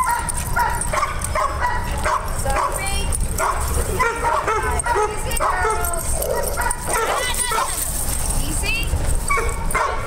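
Several dogs playing rough together, giving short yips, whines and barks throughout, with a few higher rising calls near the end.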